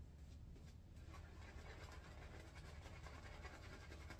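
Faint scratchy swishing of a badger-hair shaving brush working lather over a stubbled face.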